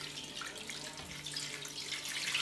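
A steady stream of cold water poured from a plastic jug into a stainless steel pot, running down around the glass jars standing in it.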